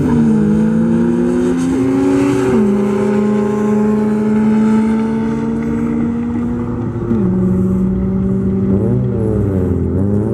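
Cars accelerating hard down a drag strip, a tuned Volkswagen Golf IV TDI diesel against a Honda Civic Type R. The engine note climbs in pitch and drops at each upshift, about a quarter second, two and a half seconds and seven seconds in.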